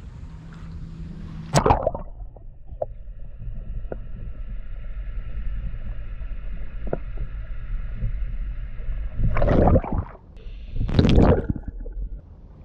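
A GoPro action camera's built-in microphones plunged into lake water. There is a splash about two seconds in, then muffled underwater gurgling with a faint steady hum and a few small clicks. Near the end come two loud splashes as the camera is pulled back out.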